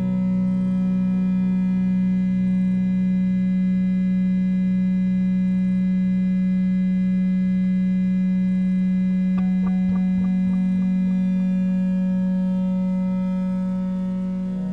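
Steady electronic drone from oscillators: one strong low tone with a stack of unchanging overtones, holding with little change. A short run of faint clicks comes about nine and a half seconds in.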